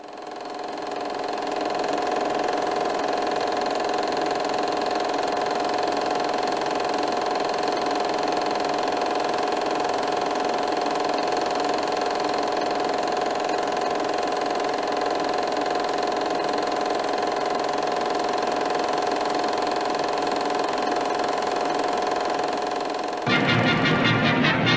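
A steady whirring drone fades in over the first couple of seconds and then holds unchanged. Near the end it gives way to a brass and timpani orchestral fanfare.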